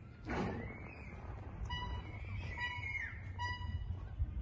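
Outdoor ambience: a steady low rumble with a few short, high bird chirps, three of them evenly spaced over the second half.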